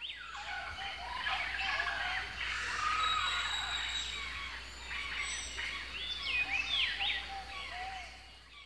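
Many birds calling and singing at once, a dense chorus of short whistled and gliding notes, over a faint steady low hum.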